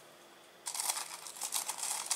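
Crinkly rustling from handling frozen chopped parsley. It starts about two-thirds of a second in and continues as a dense run of small crackles.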